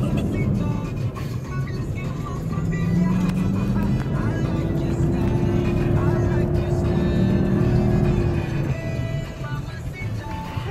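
Cabin noise of a four-wheel-drive driving over sand dunes: a steady low engine and ride rumble, with music and voices mixed in.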